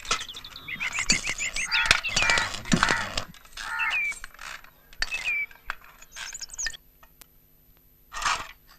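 Workshop clicks and metallic clinks, with small birds chirping in quick repeated trills and a few single calls. It falls nearly quiet about a second before the end.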